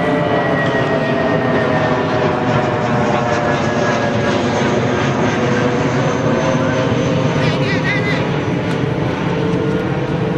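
A loud, steady engine drone whose tones sink slowly in pitch throughout, with voices calling over it.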